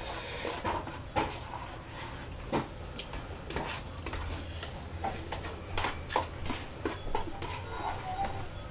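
Instant ramen noodles being slurped and eaten, with short irregular clicks and scrapes of utensils against paper noodle cups.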